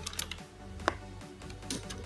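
Computer keyboard keys tapped as a word is typed: a few scattered clicks, the sharpest about a second in, over quiet background music.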